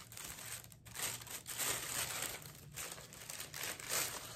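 Paper wrapping crinkling and rustling in the hands as it is unfolded from around an artwork, in uneven bursts.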